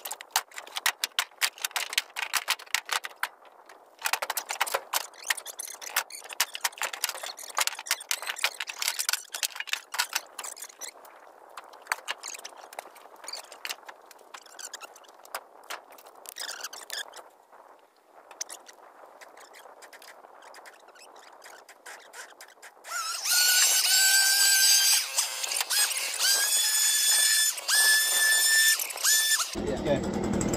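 Firewood logs being handled and tossed from a pickup truck's metal bed onto a woodpile: a quick, uneven run of wooden knocks and clatters, with scraping on the bed. About 23 seconds in, a loud, high whistling squeal takes over, broken into a few short pieces.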